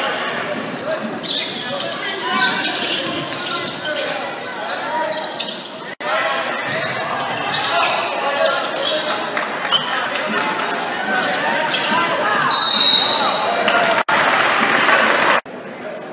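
Gymnasium crowd noise from spectators chattering and calling out during a basketball game, with a basketball dribbling on the hardwood court. A short, shrill referee's whistle sounds about three-quarters of the way through, and the crowd gets louder around it.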